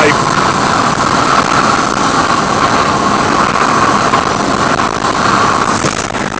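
A loud, steady din of a huge flock of birds all calling at once, mixed with traffic passing on the road.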